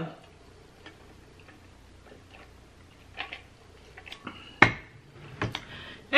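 Quiet sipping through a straw from an insulated metal tumbler, with a few faint clicks, then one sharp knock about four and a half seconds in as the tumbler is set down on the table.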